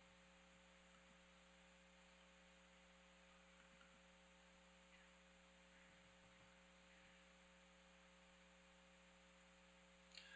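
Near silence: a faint, steady electrical hum in the room tone.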